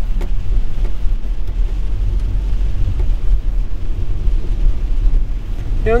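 Car driving on a wet road, heard from inside the cabin: a steady low rumble of engine and tyres with a fainter hiss above it.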